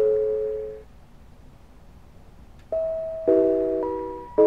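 Mr. Christmas Bells of Christmas (1991) set of small brass bells playing a Christmas tune in harmony. A chord rings and fades out, a pause of nearly two seconds follows, then a new phrase begins with a single bell note and then struck chords.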